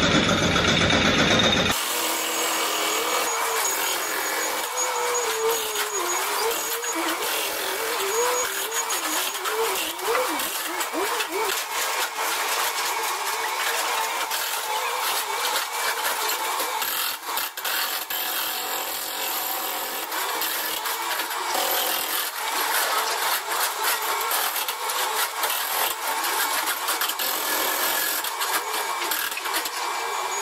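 Sped-up recording of a quarry chain saw cutting into a stone block: steady machine noise full of rapid ticking, with high-pitched, wavering voices over it.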